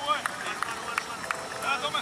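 Men's voices calling out across a rugby training field, with a few short, sharp knocks in the first second.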